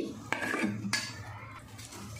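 Two sharp clinks of metal kitchen utensils, one a third of a second in and one about a second in, followed by a faint steady low hum.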